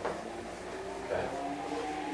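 Dry-erase marker strokes on a whiteboard, a short sharp stroke at the start, over a steady room hum, with a brief murmured voice about a second in.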